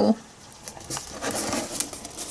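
Quiet rustling and small clicks of a plastic oil bottle in a plastic bag being lifted and turned in the hand.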